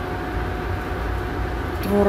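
Steady hum of an induction cooktop running under a pot of heating milk, its cooling fan giving an even low rumble with a faint constant whine above it.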